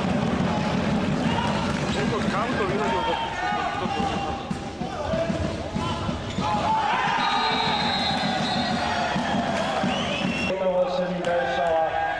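Futsal ball thudding as it is kicked and bounces on a wooden indoor court, mixed with a steady hubbub of players' and spectators' voices.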